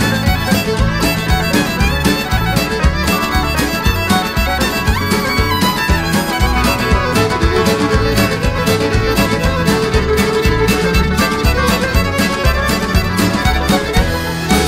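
Country band playing an instrumental passage led by a fiddle, over a steady beat.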